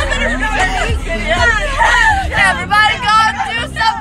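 Several young women's voices shouting and chattering over one another inside a moving vehicle, over a steady low road rumble.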